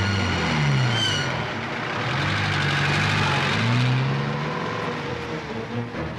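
Jeep engine running, its pitch rising and falling several times as it revs up and eases off, over a steady rush of noise.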